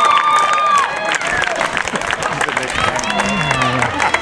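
Sideline spectators cheering for a breakaway run: long drawn-out shouts near the start and again near the end, over scattered clapping.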